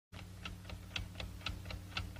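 Alarm clock ticking steadily, about four ticks a second, over a faint low hum.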